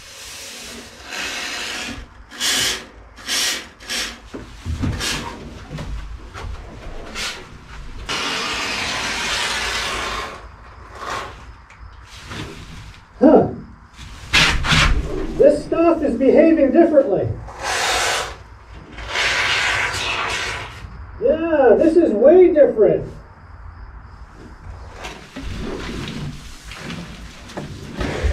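Two-component polyurethane spray foam hissing out of the dispensing gun in several bursts, two of them about two seconds long, with a few sharp knocks in between.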